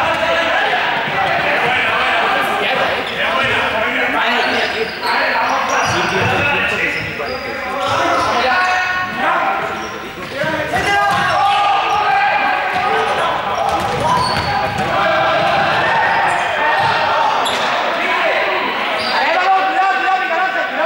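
Many young people's voices shouting and calling over one another in a large, echoing sports hall during a running ball game, with balls bouncing on the hall floor.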